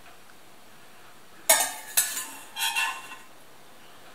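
Slotted metal spatula knocking and scraping against the inside of an enamel pot while scooping cooked pasta: a few sharp metallic clanks starting about a second and a half in, each with a brief ring.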